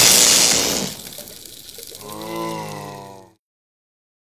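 Cartoon electric-zap sound effect: a loud crackling burst that fades out within the first second. It is followed by about a second of a low, wavering pitched cry that cuts off suddenly.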